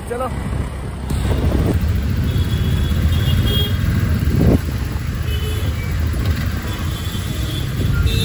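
City road traffic heard from a motorcycle on the move: a steady rumble of engines and road noise with wind buffeting the microphone, and faint vehicle horns in the distance.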